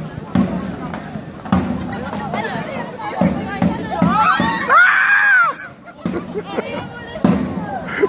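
Pedestrian crowd chatter, with a young girl's high-pitched shout about four seconds in, the loudest sound here.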